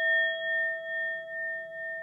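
The ring of a struck bell: a clear, steady tone with fainter higher overtones. It pulses gently about twice a second as it slowly fades.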